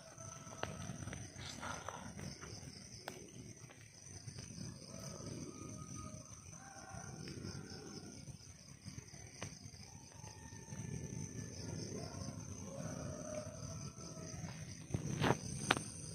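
A person's voice making wordless vocal sounds in short broken stretches, over a steady high-pitched whine. Two sharp knocks come near the end.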